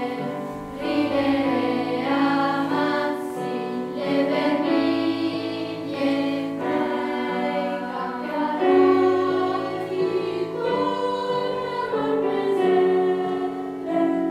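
Children's choir singing a slow piece in several parts, with piano accompaniment holding low notes beneath the voices.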